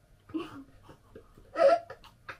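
A child's stifled giggles in a few short bursts, the loudest about one and a half seconds in.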